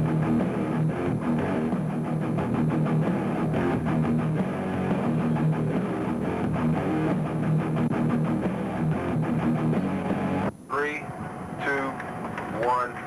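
Rock music with electric guitar and a steady drum beat, which cuts off suddenly about ten and a half seconds in. A high-pitched voice follows.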